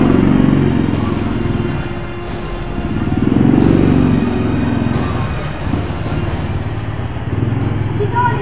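Background music with a steady beat, over a small motorcycle's engine that swells twice as the bike rides off, loudest about three to four seconds in.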